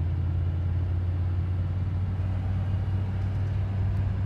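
Interior cab sound of a 1993 Chevy Silverado 1500 pickup accelerating through about 40 to 50 mph: a steady low engine and road drone heard from inside the cab. The owner believes the engine is the 5.7 V8.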